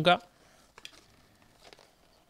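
Faint rustling of product packaging being handled, with a few light clicks, after the end of a spoken word.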